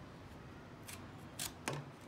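Sharp edge of a Demko AD10 folding knife's CPM 3V blade slicing through tough seat-belt webbing. It makes three short, crisp rasps, about a second in, half a second later and just before the end, as the strap is cut through.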